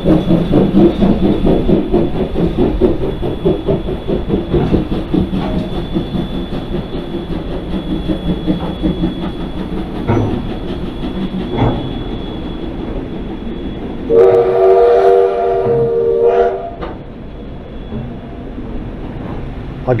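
Steam locomotive pulling away, its rhythmic exhaust chuffing and wheel noise fading as it leaves. About fourteen seconds in it gives one whistle blast of about two and a half seconds.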